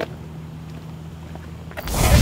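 A steady low hum, then a loud whooshing transition sound effect that swells in near the end.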